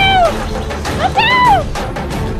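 Two short high-pitched cries, each rising and then falling in pitch, one at the start and one about a second in, over background music.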